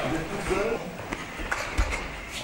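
Indistinct talking among several people, in short snatches, with a few sharp knocks about a second in and near the end, the last one the loudest.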